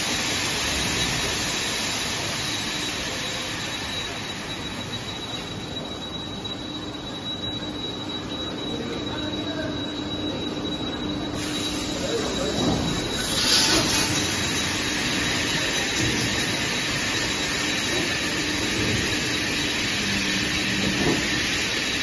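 High-pressure water jets spraying inside and outside inverted 5-gallon bottles in a bottle rinsing and washing machine: a steady hissing spray over a thin, steady high whine. The spray eases off for several seconds midway, then cuts back in sharply about eleven seconds in, with a louder surge shortly after.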